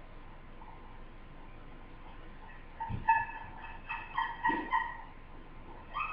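A run of short, pitched animal calls in quick succession, starting about three seconds in and lasting about two seconds.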